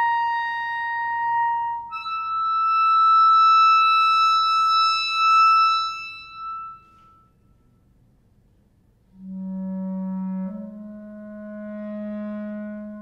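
Unaccompanied clarinet holding a long high note, then moving up to another long held note that dies away. After about two seconds of near silence, a low held note enters in the instrument's bottom register and moves up a step.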